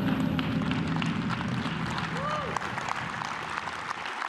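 Audience applauding, scattered clapping over a murmur of voices in the room.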